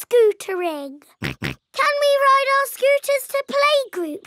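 High-pitched cartoon children's voices speaking, one word drawn out, with two quick pig snorts about a second in.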